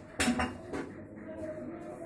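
Tableware being handled behind a small bar counter: a sharp double clatter about a fifth of a second in, then a fainter clink just under a second in.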